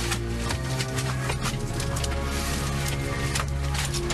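Dramatic background music with sustained low notes, with short clicks and knocks over it.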